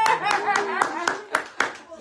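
A handful of irregular hand claps, about six in a second and a half, under people's voices in a small room.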